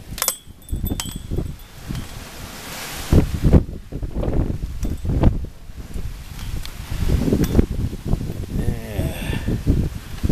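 Storm wind gusting hard against the microphone in irregular low buffets, with rustling and a few clicks from the camera being handled.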